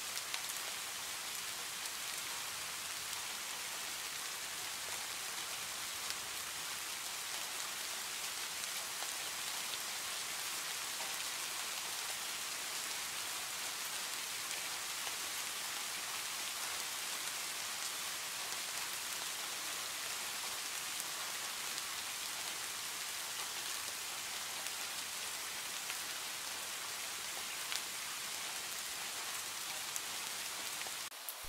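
Recorded rain ambience: a steady, even hiss of rain falling on a surface.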